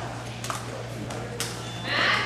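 Two sharp camera-shutter clicks about a second apart over a steady low hum, then a breathy rush near the end.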